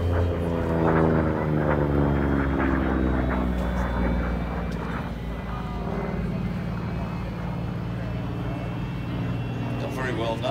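Propeller fighter's radial engine, a WWII F4U Corsair, droning as it flies past overhead: the pitch falls over the first few seconds, then settles into a steadier, lower drone.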